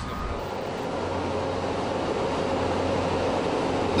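Steady drone of heavy machinery on an offshore construction pontoon, with a few faint held tones, growing slightly louder.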